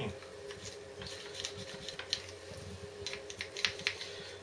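Light scraping and scattered clicks of a hand tool worked against a motorcycle's front brake caliper and piston as it is cleaned, quickening about three seconds in, over a steady faint hum.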